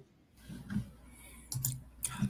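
A few soft computer-keyboard clicks, faint and heard through a video-call microphone, with a brief low voice sound about one and a half seconds in.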